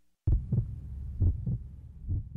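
Heartbeat sound effect: low double thumps, about one pair a second, beginning a quarter second in after a moment of silence.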